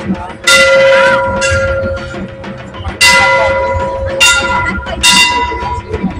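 Large hanging brass temple bell rung by hand, struck about five times at uneven intervals, each strike ringing on over a steady hum. A crowd murmurs underneath.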